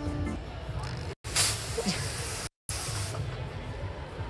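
Handheld fog gun firing a blast of fog: a loud hissing spray that starts about a second and a half in and lasts nearly two seconds, over background music. The sound drops out to silence twice for a moment.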